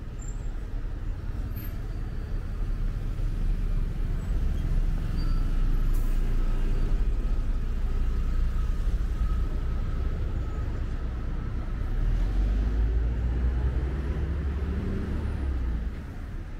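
Road traffic passing on a street: vehicle engine rumble swelling as vehicles go by, loudest about a third of the way in and again near the end.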